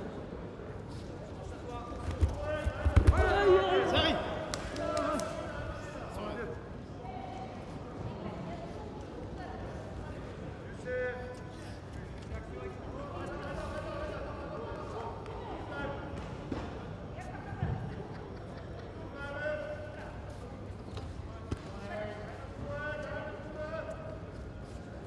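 Dull thumps on the judo mat as two judoka grapple, loudest in a cluster about two to four seconds in, with voices calling out at intervals in a large, echoing hall.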